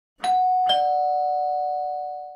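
Two-note descending chime of the ding-dong doorbell kind: a higher note is struck, then a lower one about half a second later, and both ring on together, slowly fading.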